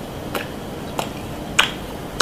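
Close-miked chewing mouth sounds: three short, sharp, wet clicks of lips and tongue, about 0.6 s apart, the loudest about one and a half seconds in.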